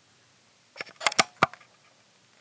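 A quick run of about five sharp clicks, a little under a second in, over about half a second.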